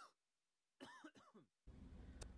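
Near silence broken by a brief, faint throat-clearing sound about a second in, followed by faint steady room hiss.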